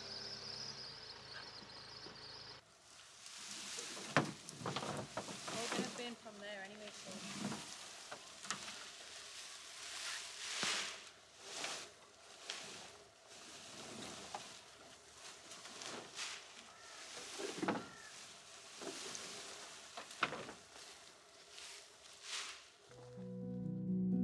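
Leafy olive-tree prunings rustling and crashing as armfuls of branches are dragged off a pickup's bed and thrown onto a burn pile, in irregular brushing strokes and thuds. Music comes in near the end.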